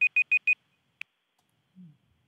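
Electronic timer beeping a quick burst of four high-pitched beeps, the signal that a speaker's allotted time has run out, followed by a single sharp click about a second in.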